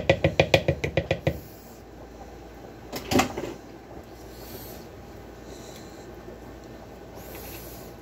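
A rapid, even series of taps, about seven a second, that stops about a second and a half in. A single short knock follows about three seconds in, then quiet kitchen room tone.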